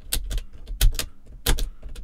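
LSA punch-down tool seating ethernet wires into the insulation-displacement contacts of a wall jack: sharp, separate clicks, about four in two seconds, as each conductor is pressed in and its end trimmed.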